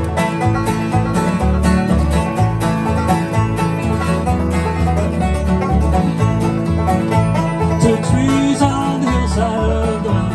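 Live acoustic bluegrass band playing an instrumental passage: banjo picking over strummed acoustic guitars, with upright bass notes pulsing underneath.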